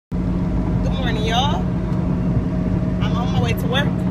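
Steady low drone of a car's engine and road noise heard from inside the cabin at freeway speed. A voice sounds briefly about a second in and again near the end.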